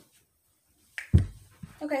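Near silence, then about a second in a sudden click followed at once by a short, heavy low thump, the loudest thing here; a woman then says "Okay".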